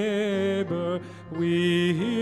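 A man singing a hymn with vibrato while accompanying himself on a grand piano, with a brief break between phrases just past the middle.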